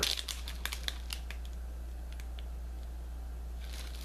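A plastic zip-top bag of loose pipe tobacco crinkling as it is handled: a flurry of crackles in the first second, then only a few faint ones over a steady low hum.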